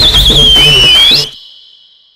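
Show-intro jingle: a shrill, warbling whistle over a drum beat, gliding down and back up before the music cuts off about a second in. A thin steady tone lingers and fades out.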